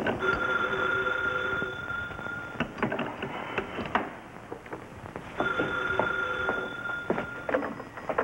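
Desk telephone ringing twice, each ring about two seconds long with a pause of about three seconds between them. A few light clicks and knocks come between the rings.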